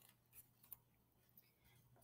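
Near silence: room tone with three faint, brief clicks.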